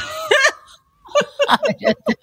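A woman laughing in a quick run of short, breathy bursts, after a trailing word of speech.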